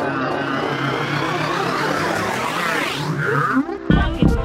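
Dense swirl of gliding electronic synthesizer tones, many pitches sweeping up and down at once, with one sweep rising steeply and breaking off about three seconds in.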